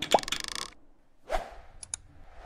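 Cartoon animation sound effects: a pop with a fizzy swish at the start, a whoosh about a second later, then two quick mouse clicks near the end.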